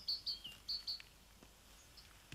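Small bird chirping: a quick run of high short notes, some sliding down in pitch, that stops about a second in.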